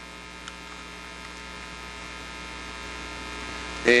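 Steady electrical mains hum with a stack of higher overtones, running under the recording of the lecture hall's sound system; a faint tick about half a second in.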